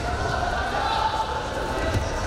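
Voices shouting in a large hall over the thuds of wrestlers' feet on the mat, with a heavier thump near the end as one wrestler shoots in.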